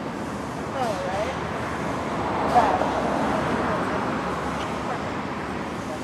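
A vehicle passing on the road: a broad rushing noise that swells to its loudest about two and a half seconds in and then fades, with faint voices nearby.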